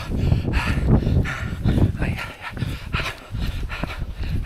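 A man panting hard in quick, even breaths while jogging under a heavy loaded bergen, with scuffing footfalls on a stony path.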